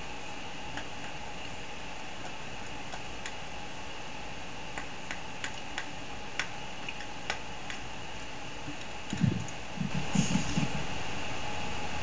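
Steady background hum with a run of about eight light clicks in the middle, then a few short low vocal sounds near the end.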